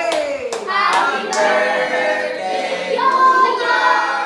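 A group of people, children and adults, singing together in chorus with hand clapping.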